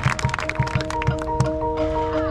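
Marching band percussion starting a piece: sharp clicks over a steady low beat of about four a second, with ringing mallet-percussion tones joining about half a second in and held after the beat stops.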